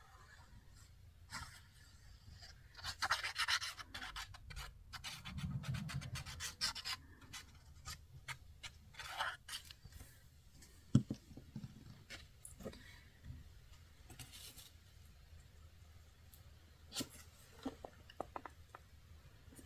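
Quiet rustling and scraping of scrapbook paper being handled and slid over a cutting mat, then laid onto a cardboard box cover and smoothed down by hand. The handling is busiest in the first third, with a single sharp tap about eleven seconds in and a few light clicks near the end.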